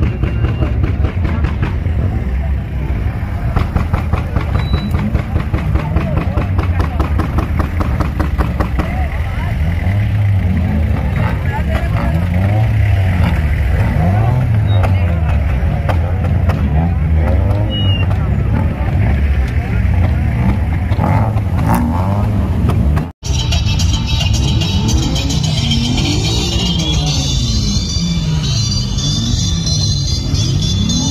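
Busy crowd noise: many voices mixed with music and car engine sound. The sound cuts out for an instant about three quarters of the way through, and afterwards the music comes through more clearly.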